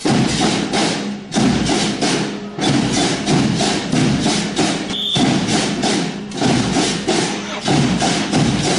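Marching band drums beating a steady parade rhythm, a rapid run of sharp strikes with brief breaks between phrases.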